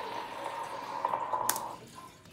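Water running and dripping in a bathtub, over a steady hum that stops near the end, with a single sharp click about one and a half seconds in.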